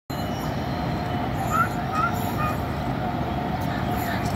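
Steady rumbling background noise with a constant mid-pitched hum, broken by two short rising chirps about a second and a half and two seconds in.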